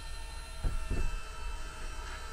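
Electric bed-lift motor of an RV's power bunks running with a steady low hum while the bunks are being lowered, with two soft knocks about a second in.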